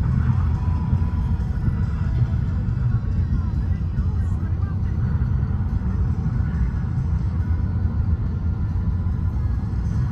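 Steady low rumble of road and engine noise heard from inside a vehicle's cabin while it travels at highway speed.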